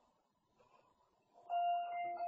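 An electronic chime: a single bright held tone starts suddenly about one and a half seconds in and rings on.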